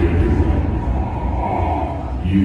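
A steady low rumble with indistinct murmur, with no clear tune or voice; the music ends at the start.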